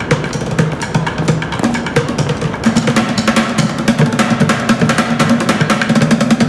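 Fast drumming with sticks on plastic buckets: a dense run of sharp strikes over a lower thudding pattern. A low held note joins about three seconds in.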